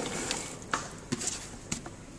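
White beans sliding out of a plastic container into an aluminium pot of stew, a soft wet rush that fades in the first half second, followed by a few light clicks against the pot.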